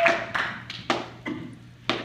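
Applause dying away into a handful of scattered single hand claps.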